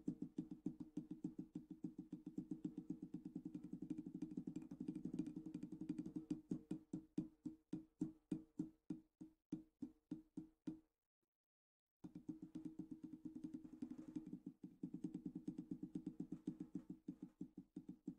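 Drumsticks played on a Powerbeat 14-inch rubber practice pad sitting on a snare drum with the snares on, giving a damped snare tone. Fast, even strokes open up into separate, slower strokes and stop about eleven seconds in. After a pause of about a second, the fast strokes start again.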